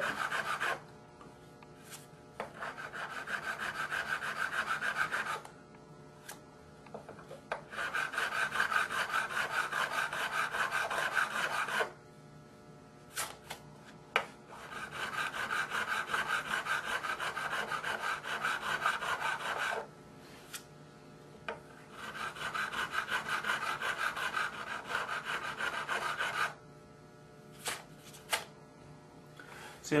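A curved fret-crowning file rasping back and forth across a guitar's metal fret wire in four long bouts of quick strokes, with brief pauses and a few light clicks of the tool between them: the sides of each levelled fret are being rounded off to recrown it.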